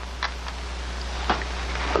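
Quiet background: a steady low hum and hiss on the soundtrack, with a couple of faint small clicks about a quarter second and a little over a second in.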